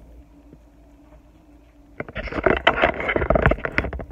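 Faint low hum, then about halfway through a sudden burst of loud rustling and rubbing with many small knocks: handling noise from the phone being moved and brushed against close to its microphone.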